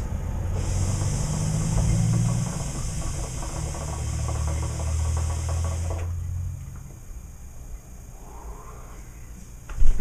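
Water bubbling in a hookah's base as a long draw is pulled through the hose, a dense rattling bubble with a steady airy hiss, stopping about six seconds in.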